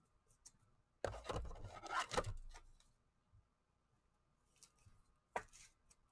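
A trading card rubbing and sliding against a clear plastic holder as it is handled: a rustling scrape about a second in that lasts about a second and a half, a few faint ticks, and one short click near the end.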